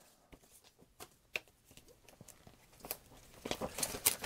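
Paper instruction manual being handled and unfolded: faint, scattered rustles and taps that build into denser rustling near the end.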